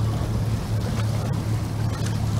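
Outboard motors idling with a steady low hum, over wind and water noise.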